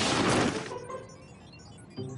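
Cartoon soundtrack: a loud burst of noise with music that dies away within the first second, leaving a quiet stretch until a sudden sound starts at the very end.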